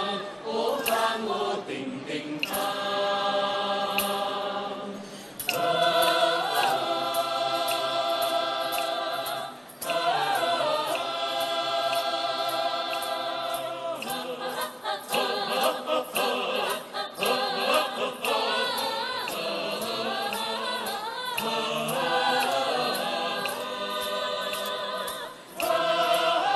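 A large mixed choir singing in sustained, held phrases, several voice parts together, with brief breaths between phrases about five, ten and twenty-five seconds in.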